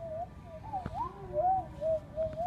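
A person whistling a low, wandering tune, the pitch sliding up and down from note to note, with a faint click about a second in.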